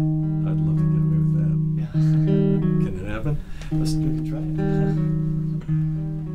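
Acoustic guitar playing slow, held notes, a new low note or chord struck about every two seconds and left to ring.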